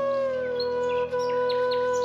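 Relaxation music: a flute holds one long low note that eases down slightly and then stays steady. Over it, birds give several quick short chirps, mostly in the second half.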